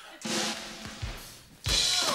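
Drum kit: a few bass drum and snare hits, then a loud crash with cymbal about one and a half seconds in, as the balloon is hit. Applause builds straight after.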